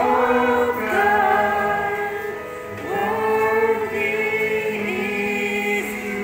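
A small group of men's and women's voices singing a gospel hymn together, holding long notes that shift to a new pitch every second or two.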